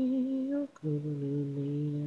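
Isolated a cappella female lead vocal with no backing. She holds a long sung note, breaks off briefly about two-thirds of a second in, then holds a lower note.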